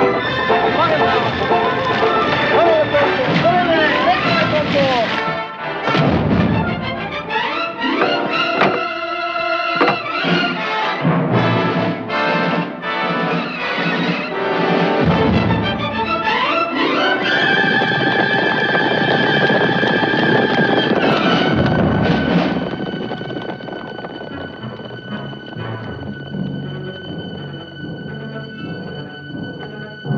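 Orchestral film score: strings sliding up and down a few seconds in, then a rising sweep into loud held high chords, falling back to softer sustained tones for the last third.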